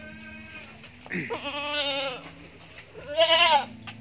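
Young Bligon goat bleating twice, each call wavering in pitch; the second, near the end, is the louder.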